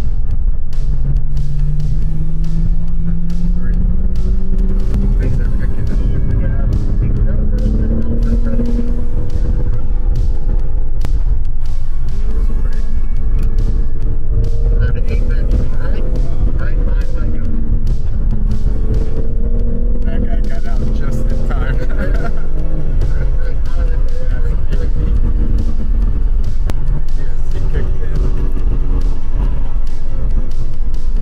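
BMW M3 Competition's twin-turbo straight-six heard from inside the cabin on track, a heavy rumble with engine pitch climbing slowly over the first several seconds, then rising and falling repeatedly through the corners. Background music plays over it.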